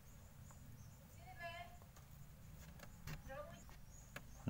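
Quiet room background with a low hum, and two faint distant calls: one about a second and a half in, another a little after three seconds.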